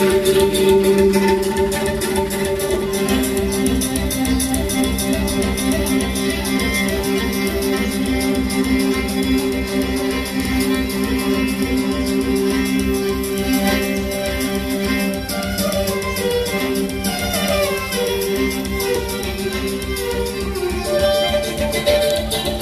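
Music played on a morin khuur (Mongolian horsehead fiddle): a bowed melody moving over held low notes, with a steady low pulse underneath.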